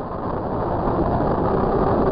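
Mediumwave AM radio static heard through an online software-defined receiver: a steady hiss and rumble of noise and interference, with no clear programme audio, as the receiver is tuned from about 772 kHz onto 774 kHz.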